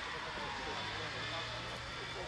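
A motor vehicle running with a steady rumble, with faint voices in the background.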